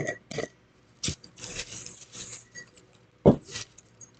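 Small folded paper slips rustling and spilling as they are tipped out of a jar onto a cloth-covered table, in several short bursts. The sharpest and loudest is a brief knock a little past three seconds in.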